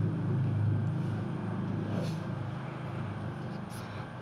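A steady low mechanical hum, easing slightly toward the end.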